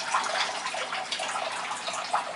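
Water running and splashing steadily into a turtle tank, from the tank's filter outflow.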